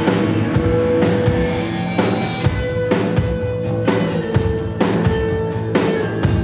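Rock band playing live: electric guitars hold sustained notes over a steady drum-kit beat, with drum and cymbal hits about twice a second.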